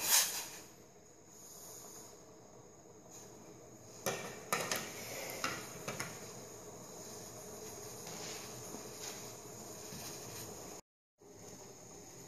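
Faint steady hiss of the wedang uwuh simmering in a stainless steel pot, with a few light clinks of kitchenware about four to five and a half seconds in.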